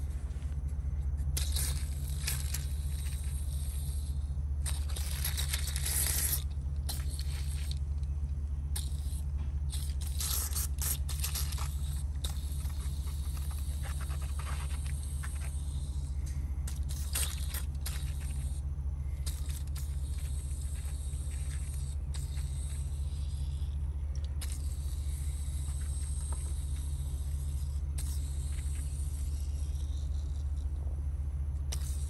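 WD-40 aerosol sprayed through its red straw onto a chainsaw chain in repeated short hissing bursts, some a second or two long, over a steady low hum.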